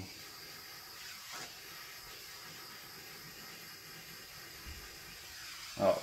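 Small handheld butane torch flame giving a low, steady hiss as it is passed over a wet acrylic pour to bring up cells and lacing.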